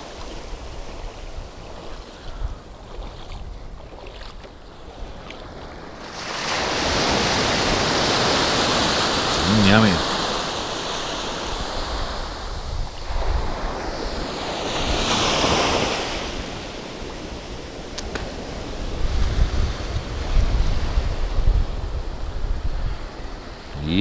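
Small waves washing in over sand in shallow sea water, swelling loud about six seconds in and again around fifteen seconds. Wind buffets the microphone in gusts near the end.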